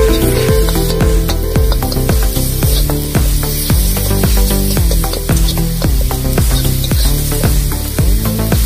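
Tomato masala sizzling in hot oil in a wok as a spatula stirs it, under background music with a steady beat.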